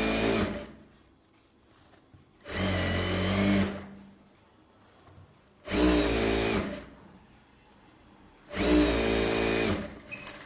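Industrial single-needle sewing machine stitching in short runs: four steady bursts of about a second each, the first ending about half a second in, separated by pauses of about two seconds as the fabric is repositioned.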